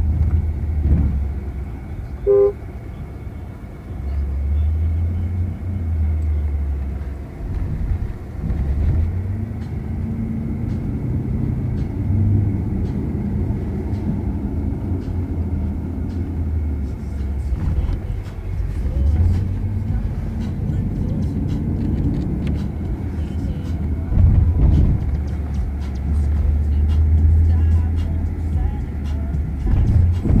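Maserati sedan driving, heard from inside the cabin: a low engine and road rumble that swells and eases with the throttle. A short beep sounds about two seconds in.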